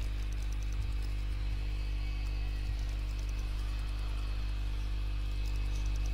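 Steady electrical hum with a faint hiss, an unchanging low drone with several overtones and no other events.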